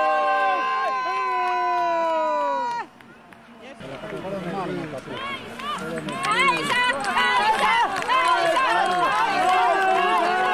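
A crowd of spectators cheering on a skier. First comes a held chorus of voices that slides down in pitch and cuts off about three seconds in. After a brief lull, many short overlapping shouts follow.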